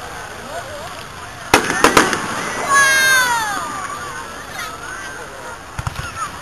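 Fireworks shells bursting: three sharp bangs in quick succession about a second and a half in, the loudest sounds here.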